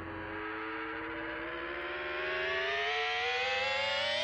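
A sustained electronic tone rich in overtones, gliding slowly and smoothly upward in pitch and swelling a little in loudness, like a synthesizer riser between radio segments.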